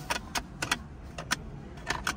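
A hand working the Lexus LS500's center console lid and latch, giving about seven sharp, irregularly spaced clicks, as if the part will not open freely.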